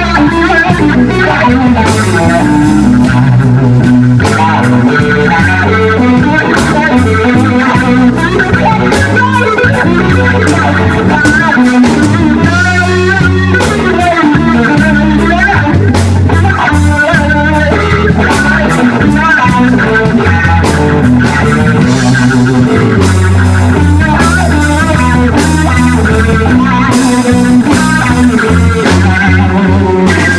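Live blues band playing an instrumental passage: a Stratocaster-style electric guitar plays a lead line over bass guitar and drums.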